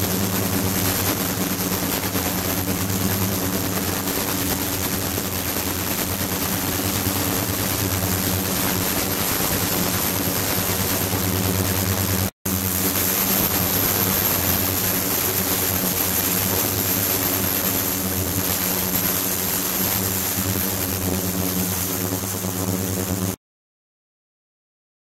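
Ultrasonic cleaning tank with its liquid-circulation pump running: a steady hiss over a low hum, with a thin high whine on top. The sound drops out for a moment about halfway through and stops shortly before the end.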